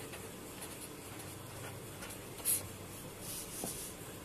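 Marker pen writing on a whiteboard: faint scratching strokes, with a brief louder stroke about two and a half seconds in and a longer one shortly after three seconds.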